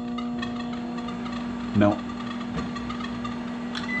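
Microwave oven running: a steady electrical hum with overtones, starting up just before and holding level throughout.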